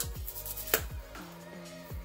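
Soft background music with steady held notes, with two sharp clicks, one at the start and one under a second in, as the lid of a small jar is worked at.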